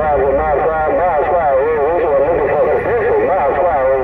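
A wavering, sing-song voice transmission coming through a President Lincoln II+ radio's speaker, its pitch sliding up and down continuously with no clear words. The sound is narrow and radio-thin, over a low vehicle rumble.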